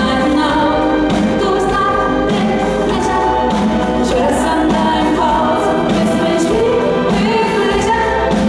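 Live pop song with several women singing together in harmony over a steady beat and bass line.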